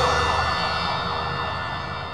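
The tail of a TV programme's closing theme: a held, siren-like synthesised chord of several steady tones, fading out gradually.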